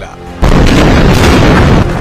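A sudden loud boom about half a second in, which carries straight on into dense, loud dramatic music.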